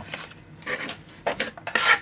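Glossy paper card rustling and rubbing in the hands as it is folded and handled, in several short scrapes, the loudest near the end.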